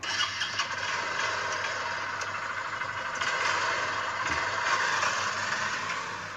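Motorcycle engine sound effect running and pulling away, a steady engine noise that swells slightly about three seconds in.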